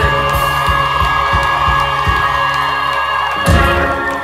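A live band of acoustic and electric guitars and drums rings out the closing chord of a song, with a steady drum beat that stops about two seconds in. A loud final hit comes about three and a half seconds in, and the crowd starts cheering near the end.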